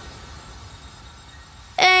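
A faint hiss and low rumble, then near the end a loud held synthesizer note with bright overtones cuts in suddenly as the electronic track's intro begins.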